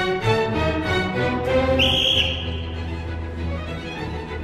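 Chamber string orchestra of violins, cellos and double bass playing the opening bars of a galop, with a short bright high note about two seconds in.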